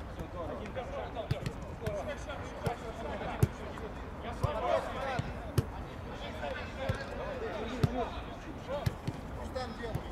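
A football being kicked several times in play, each kick a short sharp knock, while players shout and call to one another across the pitch.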